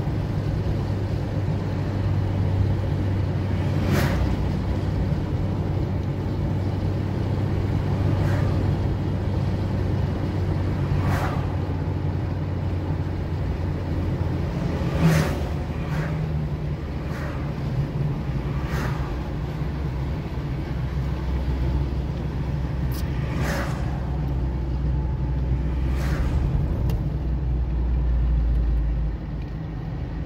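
Car interior driving noise: a steady low engine hum and road rumble, with occasional brief sharp ticks. The engine note drops lower about two-thirds of the way through, and the overall noise falls off shortly before the end.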